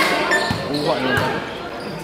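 Basketball dribbled on a hard court: a few bounces, about two-thirds of a second apart, with voices calling over them.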